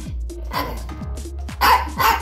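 Small Chihuahua barking demandingly, begging for a treat, with one loud, sharp bark near the end and a weaker one about half a second in, over background music.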